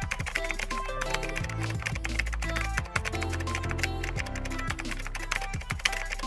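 Background music with a quick run of keyboard-typing clicks over it, one click per letter as a search term is typed in.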